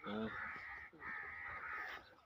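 A crow cawing in the background: two drawn-out calls, each about a second long.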